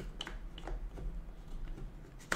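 A few light wooden clicks from a wooden puzzle box as its sliding strips are pushed and held under tension.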